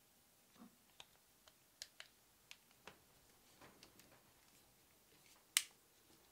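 Hand crimping tool closing on an Anderson Powerpole contact and wire: a scatter of light clicks, then one sharp, loud click near the end.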